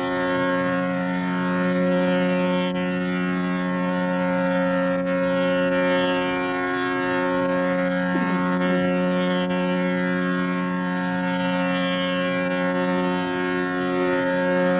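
Hindustani classical drone: tanpura and harmonium sustaining steady notes, with the tanpura's shimmering pluck cycle repeating every couple of seconds. A voice slides briefly through a glide about eight seconds in.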